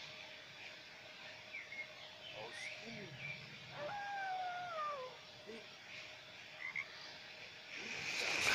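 Faint recorded animal calls played by a phone learning app, the clearest a single falling wolf howl lasting about a second, starting about four seconds in. A few brief faint chirps come before and after it.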